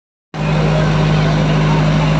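Outboard motor of a small open passenger boat running steadily at cruising speed, a low, even drone.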